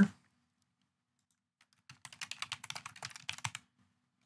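Typing on a computer keyboard: a quick run of rapid key clicks, starting about halfway in and lasting under two seconds.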